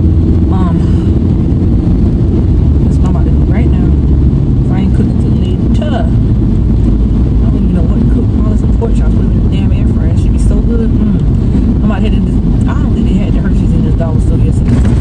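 Steady low rumble of a car being driven, heard from inside the cabin, with a woman's voice over it.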